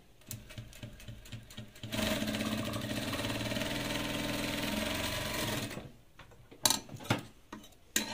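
Industrial single-needle lockstitch sewing machine stitching through fabric in one steady run of about four seconds, starting about two seconds in. Its presser foot is wrapped in clear tape to help it feed the fabric. A few sharp taps of handling follow near the end.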